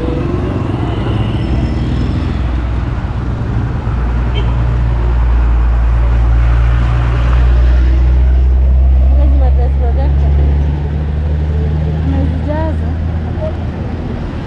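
Busy street traffic, with a motor vehicle's engine rumble growing louder about four seconds in and fading after about ten seconds. Passers-by's voices are heard briefly near the end.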